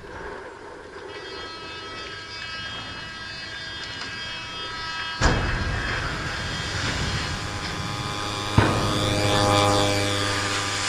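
Sound collage of found audio: layered steady tones over a hiss, broken by a sudden loud thump about five seconds in and a sharp click near the end, after which a low hum sets in.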